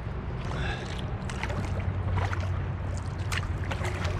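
Kayak paddling: water splashing and dripping in short irregular strokes from the paddle, over a steady low rumble.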